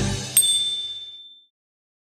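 A single bright chime struck about a third of a second in, ringing high and fading away within about a second, as the intro music ends on its last beat. It is the sound effect that marks the logo reveal.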